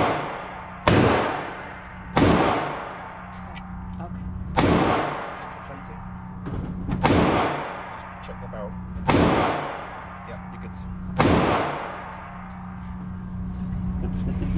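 Six pistol shots fired one at a time about two seconds apart, each followed by a long ringing echo off the walls of an indoor firing range. A steady low hum runs underneath.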